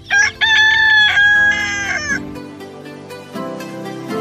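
A rooster crowing once: a short note, then a long drawn-out call of about two seconds. Soft background music follows.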